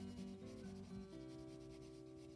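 Faint rubbing of a Prismacolor colored pencil stroking over paper, with soft background guitar music.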